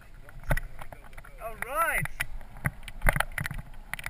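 Mountain bike setting off down a rutted, stony dirt track: a run of knocks and rattles from the bike and helmet-mounted camera jolting over the ground, with wind on the microphone. A short voice call that rises and falls in pitch comes about halfway through.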